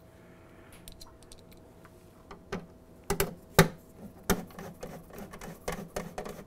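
Scattered small clicks and taps of a hand screwdriver and screws against the ice maker's sheet-metal back panel as the panel is screwed back on, with a sharper knock about three and a half seconds in.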